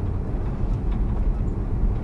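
Steady low rumble of a service van's engine and road noise heard from inside the cab while driving in traffic.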